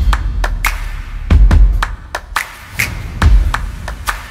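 Short logo-intro music: deep bass hits about every second and a half, with sharp percussive clicks between them.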